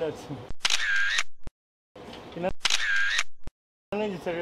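An edited-in camera-shutter sound effect played twice, about two seconds apart. Each is a click, a short bright whirring tone and a second click, with dead silence after it. A voice trails off at the very start.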